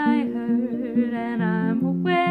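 A woman's voice humming and singing a held, wordless melody over acoustic guitar playing.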